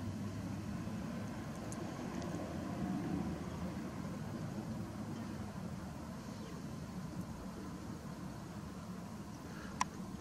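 A steady low rumble of outdoor background noise, with one sharp click shortly before the end.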